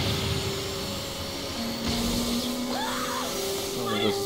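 Anime soundtrack: held music tones under a dense rushing, rumbling sound effect as a transmutation circle activates and goes wrong.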